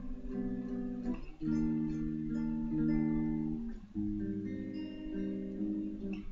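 Clean electric guitar strumming sustained jazz-style seventh chords, three chords in turn, the chord changing about a second and a half in and again about four seconds in, each chord struck a few times and left to ring.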